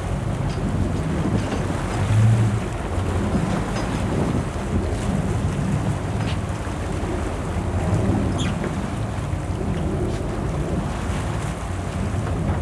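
Fishing boat's engine running steadily at low speed, with wind buffeting the microphone and water washing along the hull; a brief louder low bump about two seconds in.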